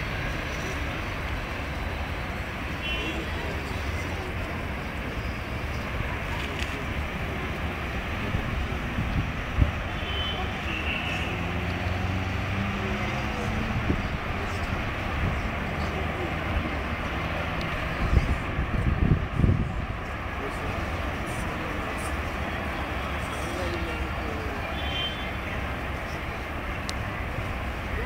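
Steady hum of distant city road traffic heard from high above. A low engine drone swells and fades a little before the middle, and a cluster of low bumps hits the microphone past the middle.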